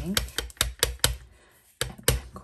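A stamp tapped repeatedly onto a Memento black ink pad to ink it: a quick run of light taps, about four or five a second, that slows and stops about a second in, followed by one more tap near the end.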